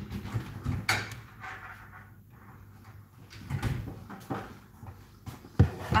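A kitchen cupboard or fridge-style door being opened and shut: a few light knocks and clicks, then a louder thump near the end.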